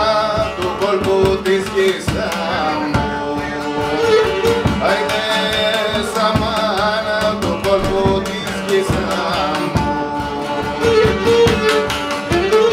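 Live Cretan syrtos: a man sings while bowing the Cretan lyra, with the laouto strumming chords and a rope-tensioned drum beating a steady dance rhythm.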